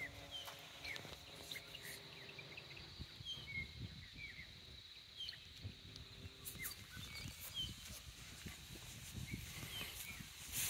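Soft, irregular footfalls of a horse and a person walking on grass, with small birds chirping briefly and repeatedly in the background.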